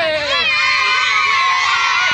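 A group of children shouting and cheering together, many voices at once; from about half a second in they hold long, drawn-out calls.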